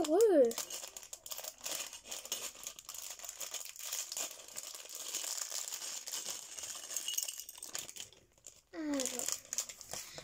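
Crinkling plastic packaging being tugged and worked open by hand, hard to get open, a dense run of crackles that dies away about eight seconds in.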